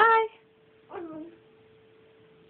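A toddler's two short, high-pitched vocal sounds: a loud squeal right at the start, then a quieter one about a second later that falls in pitch.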